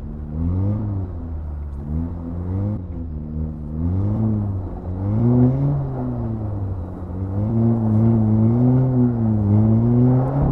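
Modified 2018 VW Golf R mk7.5's turbocharged 2.0-litre four-cylinder engine, with a cold air intake and resonator delete, heard from inside the cabin. The revs rise and fall again and again as the throttle is worked while the car slides on ice, and they are held higher and wavering near the end.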